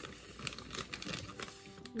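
Plastic zip-top bag crinkling and rustling in short, irregular bursts as donuts are pulled out of it by hand, with soft background music underneath.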